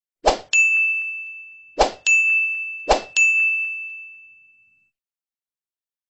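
Three click-and-ding sound effects, one as each animated on-screen button pops in: a short click, then a bright bell-like ding that rings and fades. They come about a second and a half apart, and the last ding dies away about five seconds in.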